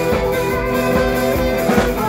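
Live band playing up-tempo rock: a saxophone carries the lead over bass guitar and a drum kit.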